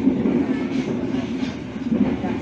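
Passenger train coach running along the track, heard from inside the car: a steady rumble of the wheels on the rails.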